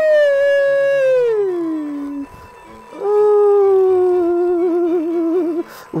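A man's two long, drawn-out howling cries of pain under a deep-tissue massage-gun treatment. The first is high and glides down over about two seconds. The second, about a second later, is lower and wavers before breaking off.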